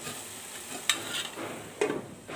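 Bottle gourd leaves and dried Bombay duck sizzling softly in a frying pan. There is a sharp click about a second in, and a knock near the end as a glass lid is set on the pan.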